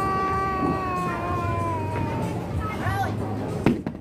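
A person's drawn-out wordless vocal cry, one long held note slowly falling in pitch for about two and a half seconds, followed by a short rising-and-falling call. A sharp knock comes near the end.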